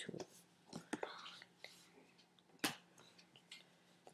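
A few sparse, single computer pointer clicks, the loudest about two and a half seconds in, placing anchor points with Photoshop's pen tool. Soft breathy murmuring and a faint steady hum lie underneath.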